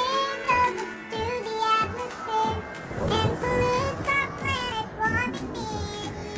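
A child's singing voice pitched up to a chipmunk-like squeak, over backing music with a steady beat.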